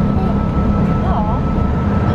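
Steady low rumble inside a jet airliner's cabin as it taxis, with a thin steady whine above it and faint voices.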